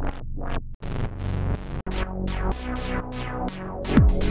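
Arturia Mini V3 software synthesizer, an emulation of a Minimoog, playing a quick repeating bass line of short notes, each starting bright and quickly going dull. The sound cuts out briefly twice in the first two seconds.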